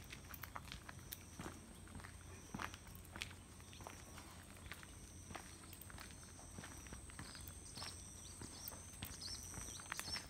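Faint footsteps of a walker and a dog on a paved path, with irregular light clicks and jingles from the dog's metal chain collar and lead. A steady high-pitched tone runs in the background, with a second, slightly lower one coming and going.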